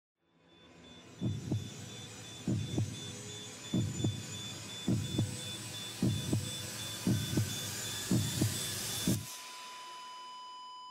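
Slow heartbeat sound effect: seven low double thumps about a second and a quarter apart, over a hissing drone that builds and cuts off suddenly just after nine seconds, leaving a steady high ringing tone.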